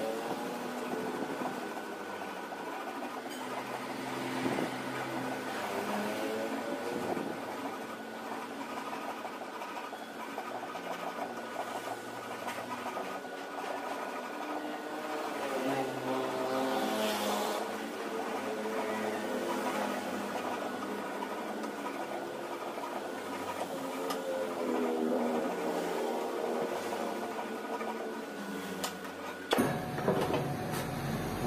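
Flat hand file scraping over and over across a small metal starter-motor part held in a bench vise.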